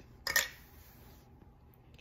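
A small plastic toy capsule and its contents being handled: one brief plastic clatter about a third of a second in, then faint rustling that dies away.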